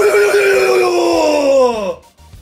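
A man's voice holding one long, drawn-out comic cry, its pitch falling steadily for about two seconds before breaking off.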